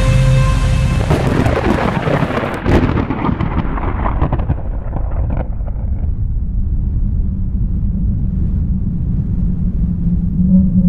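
Heavy rain hissing, with a sharp crack of thunder a little under three seconds in. The rain dies away over the next few seconds, leaving a long, low rumble of thunder.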